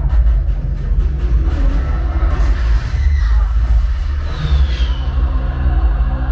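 Action-film soundtrack played loud through a Sonos Arc soundbar and Sonos Sub, picked up in the room: music over a heavy, continuous deep bass rumble, with a brief falling whistle about four seconds in.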